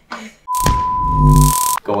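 An edited-in bleep: one steady, high beep tone a little over a second long, starting with a sharp click and overlaid by a loud hiss in its second half.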